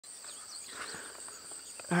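Insects shrilling steadily at a high pitch, with a few faint high chirps in the first second.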